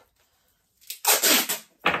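Clear adhesive tape being pulled off the roll with a short, rasping screech about a second in, then a quick sharp tear near the end as the strip is torn off.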